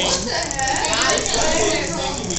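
A homemade scribble machine rattling steadily: its small motor buzzes and shakes the plastic basket frame, so its marker legs chatter on the paper.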